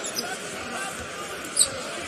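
Basketball arena ambience: a steady crowd murmur with short, high sneaker squeaks on the hardwood court, the clearest about a second and a half in.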